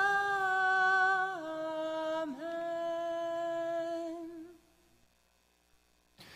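A single voice holding the drawn-out last notes of a chanted "Amen", stepping down in pitch about a second and a half in and fading away about four and a half seconds in, leaving near silence.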